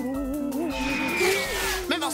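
Background music from an animated children's show: sustained notes over a soft beat, with a high tone gliding slowly downward through the middle.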